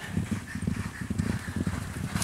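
Hoofbeats of several racehorses galloping together on grass turf, a quick, uneven run of dull thuds.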